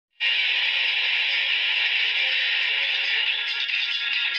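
Intro sound effect: a steady, hissing rush of noise that starts just after the beginning and holds level throughout.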